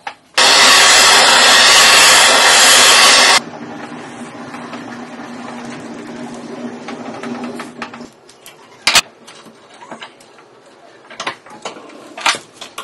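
Machinery running: a loud rushing noise for about three seconds that cuts off suddenly, then a steadier mechanical whirr with a low hum until about eight seconds in, followed by a few sharp clicks and clinks.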